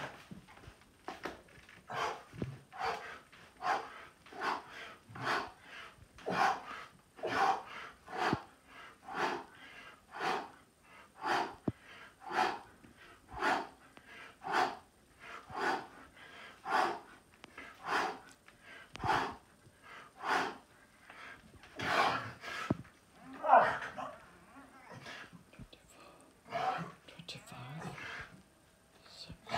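A man breathing hard through a fast set of push-ups, with a forceful breath on each rep in a quick, even rhythm. The breaths get louder about two-thirds of the way through.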